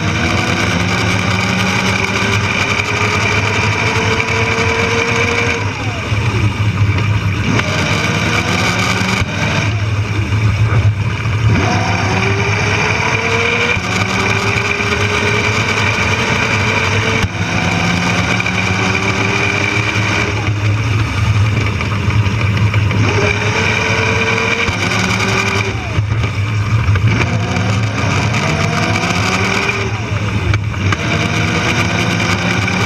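Electric drive motor of a modified Power Wheels race car whining up in pitch as it accelerates along each straight, then dropping away as it slows for the turns, several times over. Underneath runs a steady low drone and rattle from the drivetrain and the small wheels on the asphalt.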